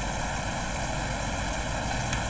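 Steady background hiss with a few faint, steady high tones: the recording's noise floor in a pause between speech.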